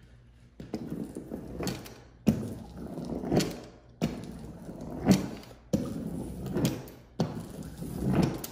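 Small hand seam roller pressed and rolled in strokes across natural hyacinth-veneer wallcovering, about five or six passes, each starting sharply and rumbling off. The paper is being rolled down to work out air pockets and make it lie flat.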